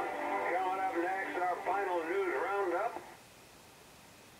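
Breadboard superheterodyne AM radio playing a broadcast voice through its speaker, thin-sounding with no deep bass or high treble. The voice cuts off abruptly about three seconds in, leaving faint hiss.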